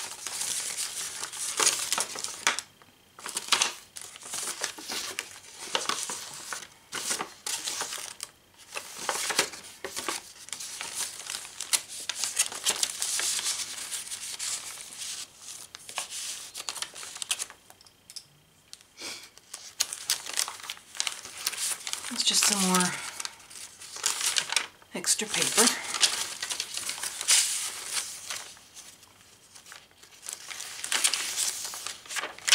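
Paper rustling and crinkling as the pages, tags and tucked paper pieces of a thick handmade junk journal are handled and turned. It comes in stretches with brief pauses between them.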